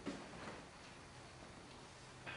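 Faint room tone in a pause between sentences of a talk.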